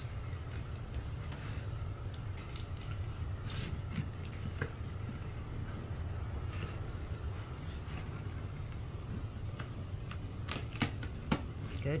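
A cardboard shipping box being worked open by hand: scattered crackles, scrapes and taps of cardboard and packing tape, with a few sharper clicks near the end.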